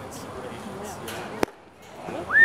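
Murmur of spectators' voices in the stands, then about one and a half seconds in a single sharp pop as the pitched baseball hits the catcher's leather mitt.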